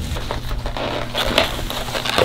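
Takeout food packaging being handled: crinkling and crackling of a paper bag and foam containers, getting busier about a second in, over a low steady hum.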